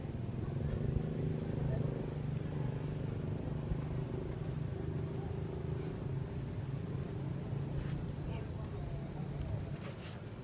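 A steady low engine hum, holding one pitch through the whole stretch.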